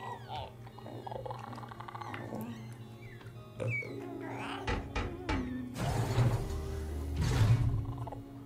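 Soundtrack of a TV episode: background score with short creature calls and a few knocks, swelling twice into louder noisy passages near the end.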